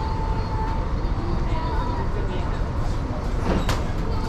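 Outdoor ambience: a steady low rumble with faint voices of people nearby, and a single sharp click near the end.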